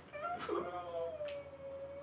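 A man's long, high-pitched strained cry of exertion, held for almost two seconds and sliding slowly down in pitch.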